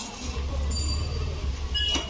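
A vehicle running with a steady low rumble that comes in about a quarter second in, with brief high-pitched squeals near the middle and again near the end.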